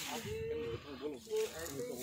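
Indistinct voices: people talking, with no other distinct sound.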